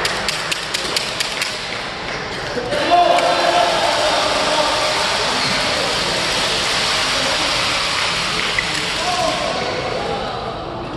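Badminton play in a sports hall: a quick run of sharp taps from rackets striking shuttlecocks over the first two seconds, then a steady din of voices echoing through the hall.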